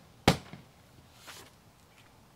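Sharp knocks on the Honda Silverwing's seat backrest bolster as it is handled. There is one loud knock just after the start and a fainter one a little past the middle.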